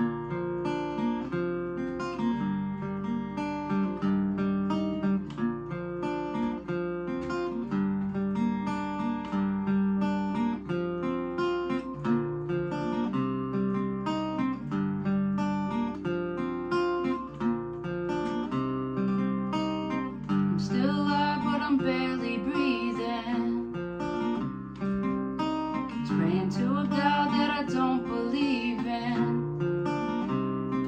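Acoustic guitar with a capo, fingerpicked in a plucky pattern of single notes over a low bass line: the instrumental intro before the vocals of the song come in.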